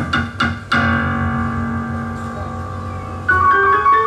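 Yamaha grand piano played solo: a quick run of short, repeated chords in the first second, then a chord held and ringing out for over two seconds. A new passage of higher notes starts near the end.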